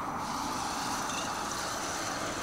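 Fishing reel being wound quickly to retrieve a crankbait, a steady whir.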